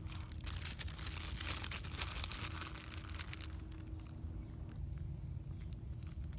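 Plastic bag of shredded cheese crinkling and rustling as it is handled and the cheese is shaken out onto the food, busiest in the first few seconds and thinning to a few scattered crackles near the end.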